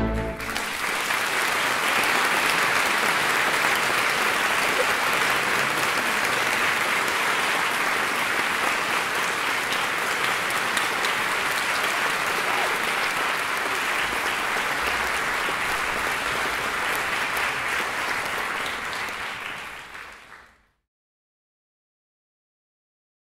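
A theatre audience applauding, steady and dense, as the last chords of orchestral music end in the first moment; the applause fades away near the end.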